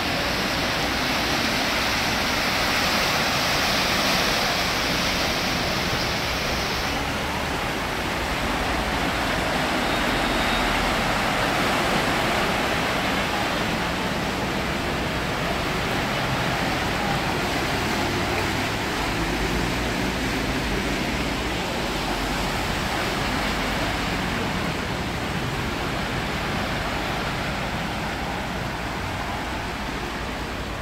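Floodwater rushing steadily across a flooded road, with cars ploughing through the deep water and splashing. The hiss is louder and brighter for the first seven seconds or so.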